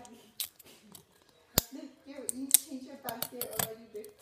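Plastic wrapping of a toy surprise ball being cut and picked open: scattered sharp clicks and crinkles, with one loud snap about a second and a half in.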